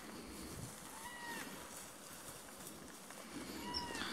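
Two faint, short animal calls about two and a half seconds apart, each rising and then falling in pitch.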